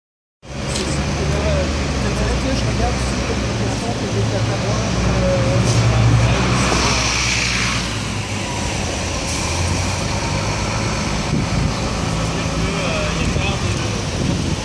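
City intersection traffic: the steady low hum of idling and passing cars, with a louder rushing noise about seven seconds in.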